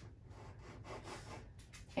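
Gray pastel pencil scratching faintly on dark pastel paper in a few short strokes as lines are sketched in.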